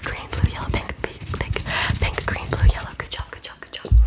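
A fluffy faux-fur pom-pom rubbed and brushed close against the microphone, making fast scratchy rustling strokes. Two dull thumps come from handling, one about two-thirds of the way in and a louder one at the very end.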